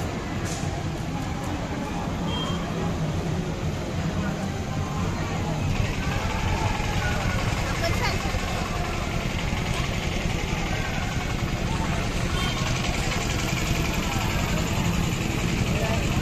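Busy outdoor festival-ground din: a steady mix of many people's voices and vehicle engines running nearby, growing somewhat louder about six seconds in.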